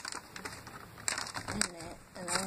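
Paper wrapper and gold foil of a chocolate bar crinkling and rustling as the bar is unwrapped, with a louder crinkle about a second in.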